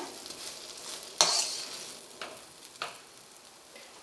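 A steel slotted spatula stirring and scraping thick rava kesari in a stainless steel pan, the mixture cooked to the stage where it leaves the sides of the pan. There is a sharp clink of metal on the pan about a second in and two lighter taps later, and the scraping fades toward the end.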